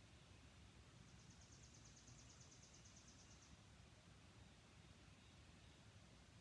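Near silence: room tone, with a faint high-pitched trill of rapid, evenly spaced pulses starting about a second in and lasting about two and a half seconds.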